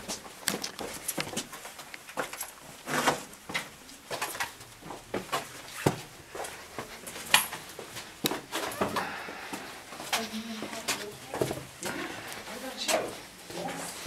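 Footsteps and scuffs on rock with frequent short knocks, under indistinct voices of people nearby, all sounding close and boxy in a narrow rock-cut tunnel.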